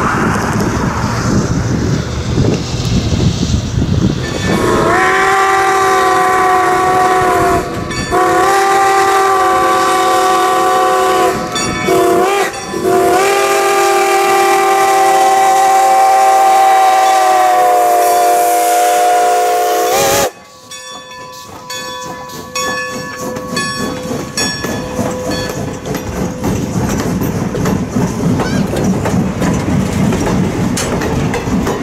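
Wind noise on the microphone, then the steam whistle of Strasburg Rail Road No. 90, a 2-10-0 steam locomotive, blows the grade-crossing signal: two long blasts, a short one and a final long one, sounding several tones at once, cut off suddenly. After that the passenger coaches roll close by, their wheels clicking over the rail joints.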